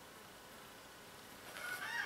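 Faint quiet outdoor background, then a rooster begins crowing about a second and a half in.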